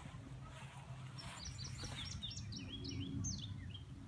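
A songbird singing a quick series of short, high chirps, starting about a second in, over a low outdoor background rumble.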